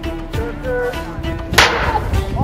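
A single sharp smack of a plastic wiffle ball at home plate as the batter swings, about one and a half seconds in, heard over steady background music.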